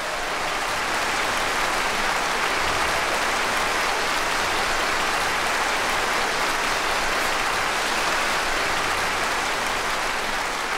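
Concert audience applauding: dense, steady clapping at the end of the piece.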